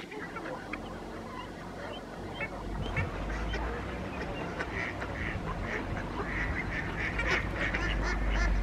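Ducks and other waterfowl calling, many short repeated calls that grow busier from about halfway through, over a low rumble.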